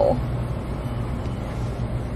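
Steady low hum of a car idling, heard inside the cabin.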